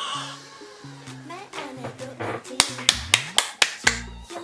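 A quick run of about seven hand claps in the last second and a half, the loudest sounds here, over an upbeat K-pop track with a sliding bass note.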